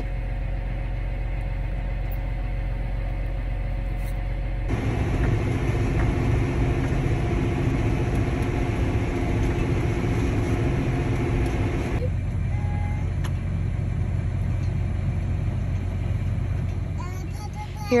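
Farm tractor engine running steadily, heard from inside the cab as a low drone while it pulls a grain cart beside a combine. The sound changes abruptly about five seconds in and again about twelve seconds in, becoming fuller and rougher after the first change.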